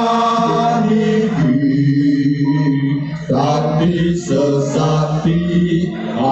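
Male singing in a slow, chant-like Javanese vocal line with long held notes that step to a new pitch every second or two, as the sung part of kuda kepang dance music.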